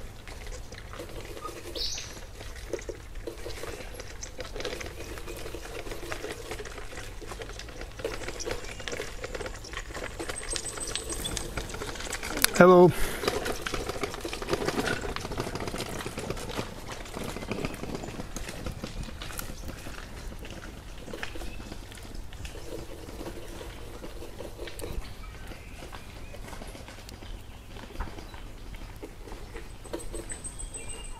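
Woodland ambience with faint, distant voices coming and going and a few brief high bird chirps. About twelve seconds in there is one short, loud pitched sound.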